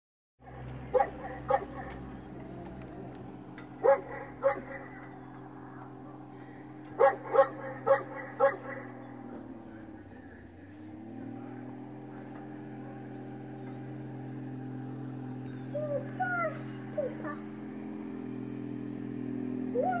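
Jeep Wrangler YJ's engine running steadily, dropping off about halfway through and picking up again. Over it a dog barks several times, twice early on, twice at about four seconds and four times at about seven to eight seconds.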